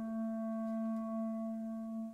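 A clarinet holding one long, steady low note in an orchestral piece.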